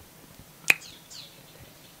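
A pause with faint background noise, broken once, about two-thirds of a second in, by a single short, sharp click. Faint, short, high chirps sound around it.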